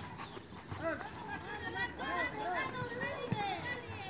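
Several voices of players and spectators shouting and calling across a football pitch, overlapping and unintelligible, with one sharp knock about three seconds in.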